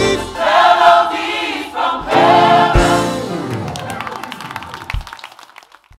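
Gospel choir singing the final phrases of a praise medley, ending on a held chord that fades away to near silence.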